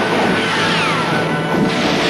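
Film soundtrack music with held tones and falling pitch sweeps about once a second, over a dense, noisy crashing din.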